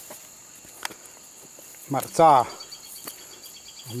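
Steady high-pitched insect shrilling, with a faint evenly pulsing chirp joining about halfway. A person's voice speaks one short phrase about two seconds in, the loudest sound here.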